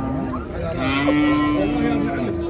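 Black-and-white dairy cow mooing: a short low call fades out at the start, then one long, steady moo begins about a second in.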